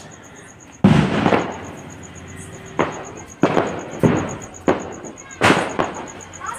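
Firecrackers bursting, about six sharp bangs at uneven intervals, each trailing off quickly; the loudest comes about a second in.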